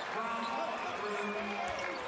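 Basketball game broadcast audio: faint play-by-play commentary over arena background noise, quieter than the voice just before it.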